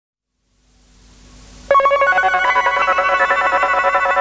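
Electronic music begins: a hiss fades in out of silence, then a little under two seconds in a fast, bright, repeating run of synthesizer notes from an Ensoniq SQ-80 starts suddenly.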